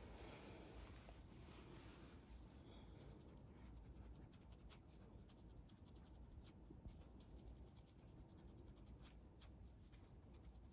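Faint, irregular scratching of a fine-tooth plastic comb scraped along a part in the scalp, loosening dandruff flakes; the strokes come more often in the second half.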